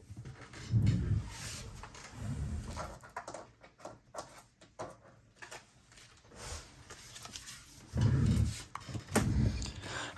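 Handling noise as a dropped card is retrieved: a few dull low bumps with soft clicks and rustles in between.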